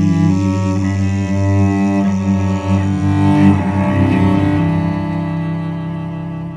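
Bowed cello playing slow, sustained notes that change every second or so, growing gradually quieter in the second half.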